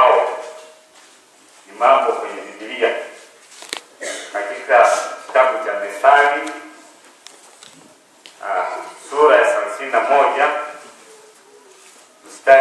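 Speech only: a man reading aloud into a microphone, in phrases of a second or two with short pauses between them.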